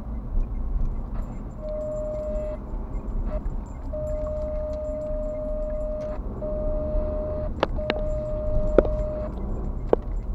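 Low road and engine noise of a car driving, heard from inside the cabin. An on-and-off steady whine runs through the middle, and a few sharp rattling clicks come near the end.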